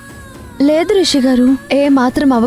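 Background song: a woman's voice singing long held notes, coming in with a rising glide about half a second in, over soft sustained music.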